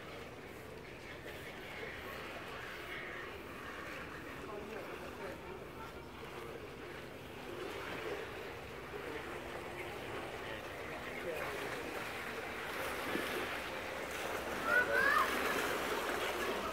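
Outdoor ambience: faint voices of people talking at a distance over a steady wash of background noise, with a few short high chirps near the end.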